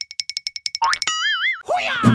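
Cartoon sound effects: a rapid run of high ticks for just under a second, a short rising whistle, then a wobbling boing about halfway through, and a rising swoop near the end.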